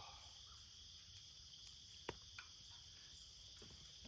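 Faint, steady, high-pitched insect chorus, with two small clicks about two seconds in.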